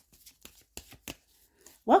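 Tarot cards being shuffled by hand: a run of irregular light clicks and slaps as the cards move. A woman's voice starts right at the end.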